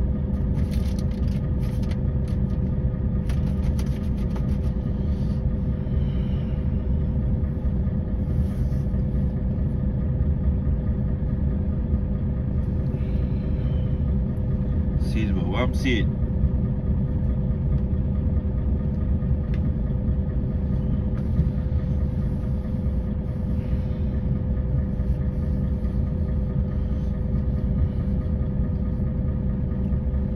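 Concrete mixer truck's diesel engine idling while stopped, a steady low rumble heard from inside the cab, with a steady hum over it.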